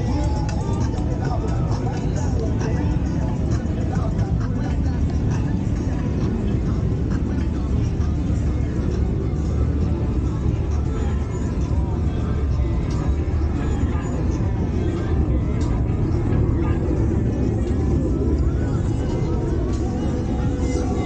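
Polaris Slingshot three-wheelers driving past one after another at parade pace, their engines running in a steady low rumble, with voices and music in the background.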